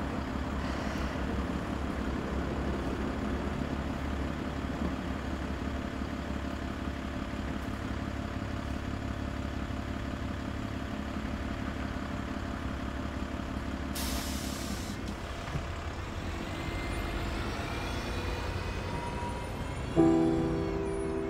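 Red double-decker bus standing at a stop with a steady low engine rumble; about fourteen seconds in, a short burst of air hiss, then a rising whine as the bus pulls away.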